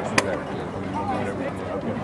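Indistinct talk from people near the microphone, with one sharp click just after the start.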